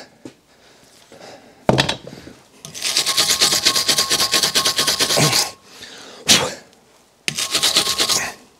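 A small hand tool scrubbed rapidly back and forth over the metal of a seized bedknife screw, in a dense run of fast strokes lasting a few seconds, with a shorter run near the end. A sharp knock comes before the scrubbing and another after it.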